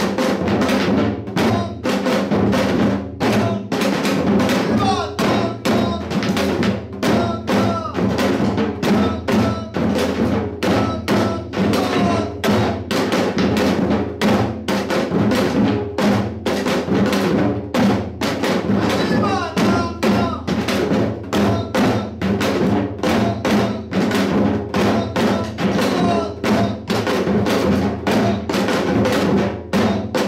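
Janggu (Korean hourglass drum) played in the fast hwimori rhythm. Strokes of the thin bamboo stick (yeolchae) and the round-headed mallet (gungchae) on its two heads come in an even, driving beat with no pause.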